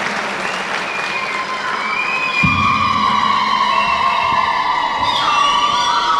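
Audience applauding and cheering after a line in a speech. From about a second in, long high-pitched tones are held over the crowd noise, and there is one low thump partway through.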